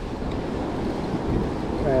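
Ocean surf washing over and around shoreline rocks, heard as a steady rushing noise, with wind buffeting the microphone.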